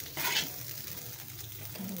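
Chicken, carrot and celery sizzling in oil in a pan as they are stirred, with a brief loud burst of noise about a quarter second in.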